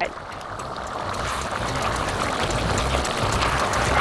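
Pot of macaroni and sausage in hot water boiling hard on high heat, a steady bubbling hiss that grows louder, while the pasta soaks up the water.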